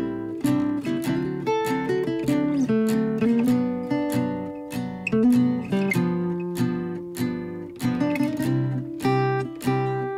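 Background music: an acoustic guitar strumming chords in a steady rhythm, about two strums a second.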